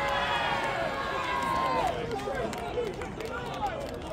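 Several voices shouting and calling over one another on a football ground, with one long drawn-out shout that falls away about halfway through.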